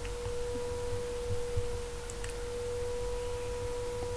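A steady, unwavering single-pitched tone in the mid range with a fainter overtone above it, holding level throughout, over a low background rumble.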